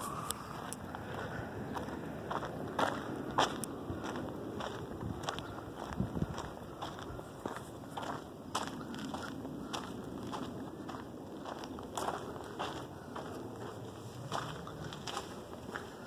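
Footsteps of a person walking across a bare dirt construction yard: uneven steps, one every half second to a second, over a steady low outdoor background.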